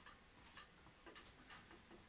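Near silence: low room hiss with a few faint, scattered clicks.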